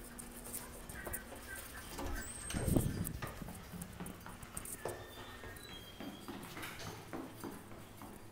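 Footsteps of a person walking on a hard floor, with a louder thump about three seconds in.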